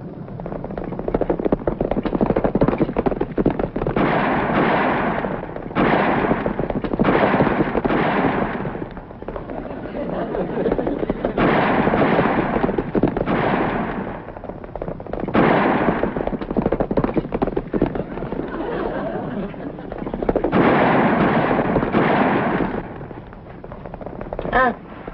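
Western film soundtrack: a volley of gunshots over galloping horses in a chase, coming in loud surges.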